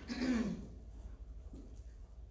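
A person clears their throat briefly, a low sound falling in pitch over about half a second. After it there is only quiet room tone with a low steady hum.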